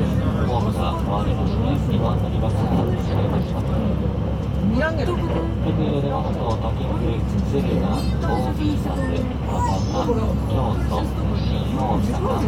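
Overlapping chatter of many passengers in a crowded carriage, over the steady running noise of a JR West 681 series electric train heard from inside a motor car.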